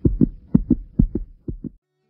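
A rhythmic beat of short, deep percussive hits, about four to five a second, which cuts off abruptly near the end.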